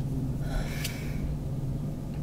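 A short, soft intake of breath with a faint click about a second in, over a low steady hum.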